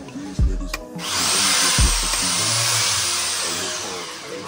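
Power drill running for about three seconds, starting about a second in and easing off near the end, while drilling a fixing hole for a curtain fitting. Background music with a heavy beat plays underneath.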